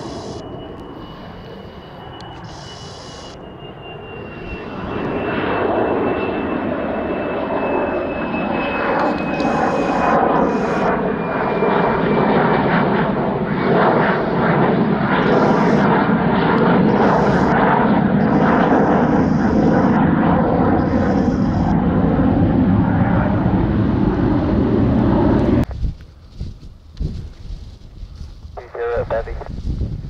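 Lockheed U-2 spy plane's jet engine passing low overhead: a high turbine whine that slides slowly down in pitch, under a loud, steady jet noise that builds about five seconds in. The noise cuts off abruptly a couple of seconds before the end.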